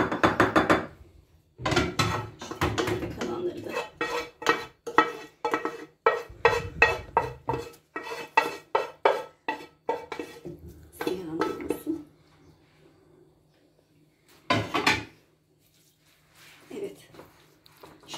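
A wooden spoon scraping and knocking against a coated frying pan and a glass bowl as cooked grated vegetables are scraped out, a rapid run of clicks and scrapes for about twelve seconds. After a quieter stretch there is one short clatter.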